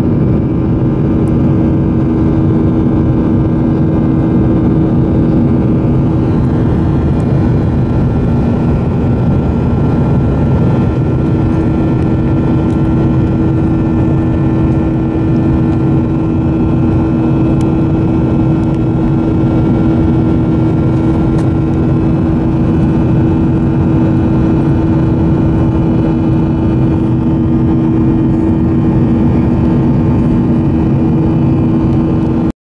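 Airliner cabin noise in flight: the wing-mounted jet engine's steady drone with a constant hum, heard from a window seat beside the engine.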